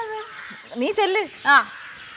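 Women's voices talking in short, lively bursts of dialogue.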